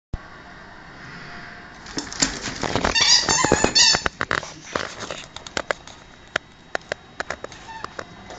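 Pets scuffling: high squeals and yelps, loudest about three to four seconds in, among many sharp clicks and taps.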